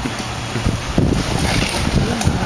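Rear-loader garbage truck's diesel engine running at idle, with wind on the microphone and a few sharp knocks.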